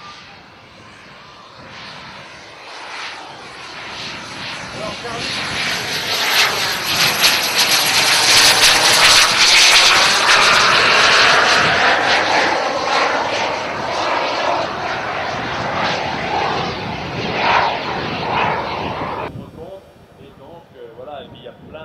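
The twin JetCat P200 turbojets of a Colomban Cri-Cri jet flying past. A high turbine whistle and jet noise swell to a loud peak about halfway through as it passes, then ease off. The sound cuts off suddenly just before the end.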